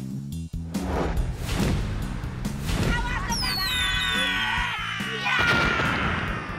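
Background music with a stepped bass line, overlaid with cartoon-style sound effects: several sharp hits in the first half, then high falling whistle tones, and a loud crash near the end.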